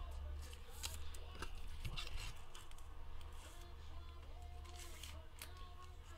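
Faint handling noise: light rustles and small plastic clicks as a trading card is slipped into a clear plastic protective holder, over a steady low hum.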